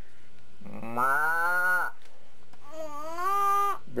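Two drawn-out voice imitations of a cow's moo. The first, about half a second in, is lower and rises in pitch; the second, about two and a half seconds in, is higher-pitched, from the young girl.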